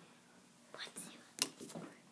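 Faint whispered speech, with one sharp click about two-thirds of the way through.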